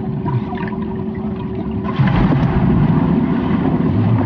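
Swimming-pool water heard through an underwater microphone: a low rumble with a steady hum, then about halfway through a sudden louder churning of water and bubbles as several people plunge in.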